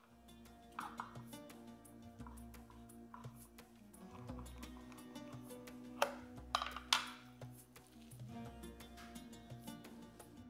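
Quiet background music with held tones. About six to seven seconds in come three sharp snips of kitchen scissors cutting through a stack of pastilla sheets.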